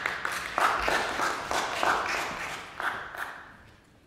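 Audience applause, a dense patter of hand claps that fades out during the last second.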